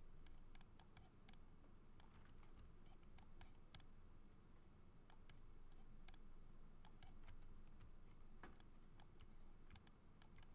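Faint, irregular clicks of a computer mouse and keyboard, a few a second at times, over a low steady hum.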